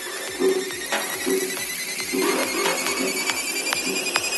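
Psytrance DJ mix in a quieter passage: short repeating synth notes over a light beat, with high synth tones rising slowly in pitch, as in a build-up.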